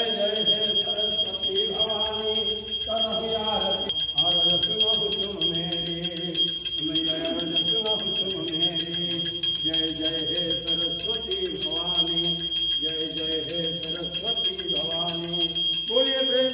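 A bell ringing steadily during an aarti, over a group of voices singing the aarti in long phrases.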